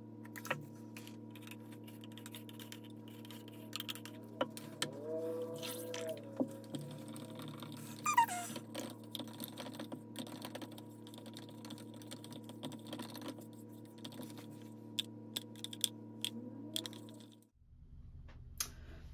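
Stick stirring white acrylic paint in a plastic yogurt container: scattered light clicks and taps against the container's wall, over a steady hum that stops near the end.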